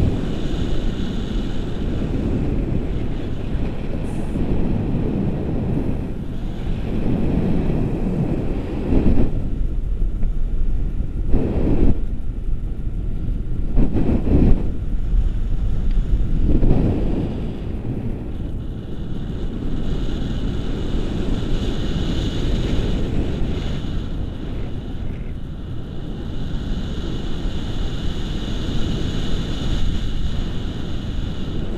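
Wind rushing over the camera microphone in paragliding flight: a steady low buffeting that swells in a few stronger gusts near the middle.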